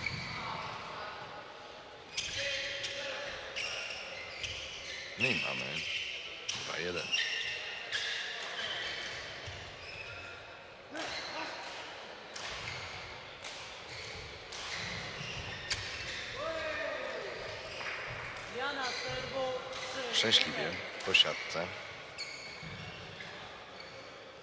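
Badminton hall sound: sharp racket-on-shuttlecock hits and footfalls from several courts, with short sneaker squeaks on the court floor, all echoing in the big hall; a quick run of loud hits comes about twenty seconds in.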